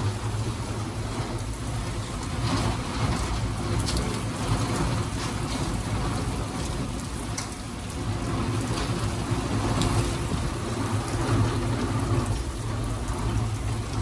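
Rain falling steadily in a thunderstorm, a continuous hiss with a few faint sharper taps scattered through it.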